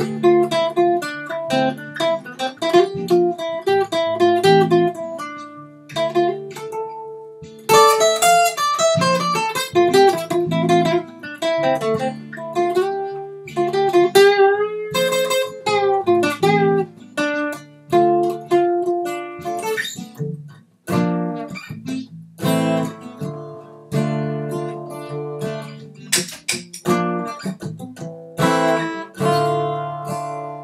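Solo cutaway acoustic guitar played instrumentally: a picked melody over bass notes, breaking off briefly about two-thirds through, then strummed chords that ring out at the end.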